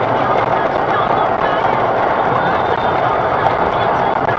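Steady road noise of a vehicle moving at highway speed, heard from inside the cabin.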